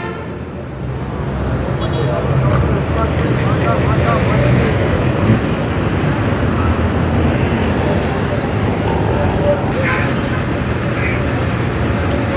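Busy city street traffic: motor vehicle engines running with a steady low hum, getting louder over the first couple of seconds, and the voices of passers-by in the background.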